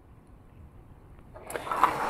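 Quiet room tone, then near the end a short burst of plastic rubbing and a click as 3D-printed plastic flashlight parts are picked up and pressed together by hand.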